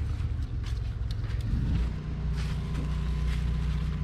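A low, steady motor hum that settles into an even drone about two seconds in, with light rustling and small clicks from squash leaves being handled.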